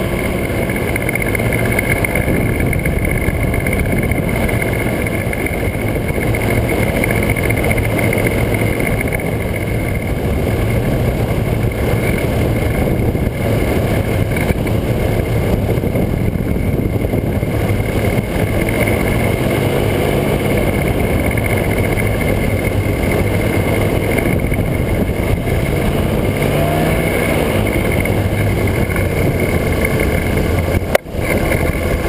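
Small aircraft engine and propeller of a powered parachute running steadily, with wind rushing past the microphone. Its pitch wavers up and down in the last ten seconds or so as the aircraft comes in over the runway to land.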